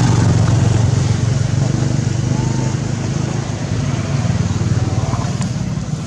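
A small engine running steadily, a low drone that eases slightly in the second half.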